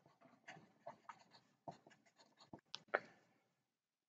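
Felt-tip marker writing on paper: a faint run of short, irregular scratching strokes as letters are drawn, the sharpest stroke about three seconds in, then the writing stops just before the end.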